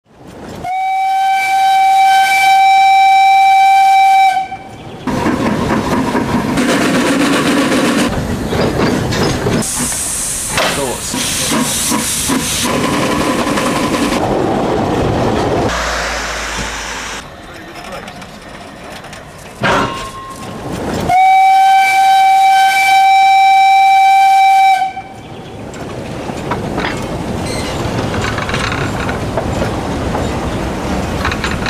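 A narrow-gauge steam locomotive's whistle blows two long, steady blasts at one pitch, each about four seconds, one near the start and one about two-thirds of the way through. Between them are the engine's hissing steam and running noise, and after the second blast the train keeps rolling along.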